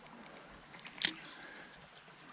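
Faint steady hiss of a shallow flowing stream, with one sharp click about a second in.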